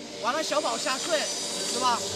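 A coach talking to players in a timeout huddle, with a steady hiss of arena noise behind the voice.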